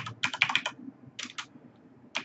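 Computer keyboard being typed on: a quick run of keystrokes in the first second, then a few more about a second in.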